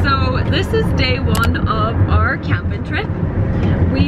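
A woman talking inside a car's cabin over the steady low rumble of the car driving on the road.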